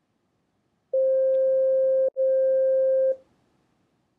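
Electronic scan tone from the Quantum Life app's energy scan: two steady, single-pitched beeps of about a second each, back to back with a tiny break between them. The tone starts about a second in and stops suddenly, as the aura scan completes.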